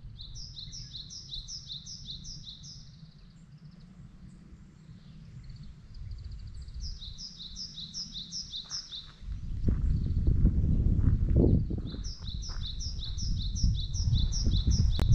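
A small bird singing quick series of repeated high two-note phrases, three series of about three seconds each. From about two-thirds of the way in, a louder low rumble on the microphone comes in under the song.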